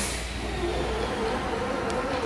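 A steady low mechanical rumble with a faint wavering drone, like an engine running.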